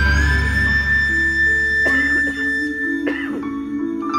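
Live symphonic concert music heard from the arena stands: a held chord with a deep bass that fades over the first second and a high tone sustained above it, then two short sharp accents about two and three seconds in.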